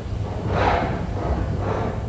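Earthquake simulator room shaking through a simulation of the magnitude 6.3 Zakros earthquake: a steady low rumble with surges of noise rising and falling about half a second in and again near the end, the gentler onset of a distant quake.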